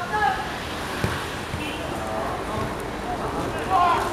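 Voices on an open football pitch, with a single dull thud about a second in: a football being struck for a free kick.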